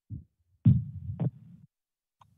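Muffled low thumps: a short one at the start, then a longer rumbling stretch with two sharper knocks, one a little over half a second in and one just past the middle.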